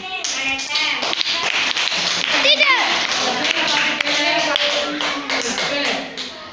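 A roomful of children clapping in quick, irregular applause, with children's voices over it and one voice calling out with a falling pitch about two and a half seconds in.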